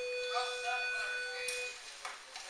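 Background music from a played-back video: a single steady held note, stopping shortly before the end, with faint voice fragments under it.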